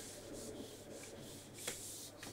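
Whiteboard marker stroking across a whiteboard as it writes: a faint dry rubbing in short strokes, with one sharp tap near the end.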